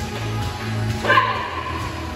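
Background music with a steady beat, and a single sharp yip from a small dog about a second in.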